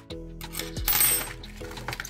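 Metal crochet hooks set down on a wooden table, a light metallic clatter about a second in, over background music.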